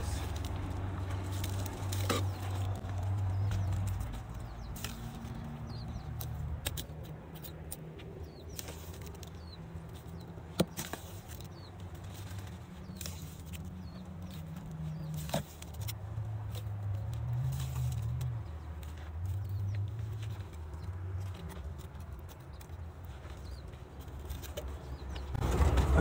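Mason's trowel scooping cement mortar from a wheelbarrow and spreading it along a footing: soft scraping with a few sharp clicks of the trowel, over a low rumble.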